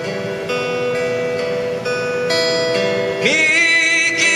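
Acoustic guitar accompaniment, plucked notes and chords ringing over each other. Near the end a man's voice comes in, sliding up into the first held note of a traditional Puyuma song.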